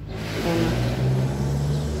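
A motor vehicle's engine accelerating close by, with a rush of noise and a low hum that rises slowly in pitch.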